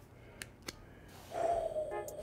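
Two light clicks of rigid plastic card toploaders knocking together as they are shuffled, then about a second and a half in a short, slightly falling held tone.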